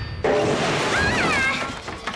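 Crash and clatter of rubbish spilling from a tipped-over recycling tipper wagon, with a short cry that rises and falls about a second in.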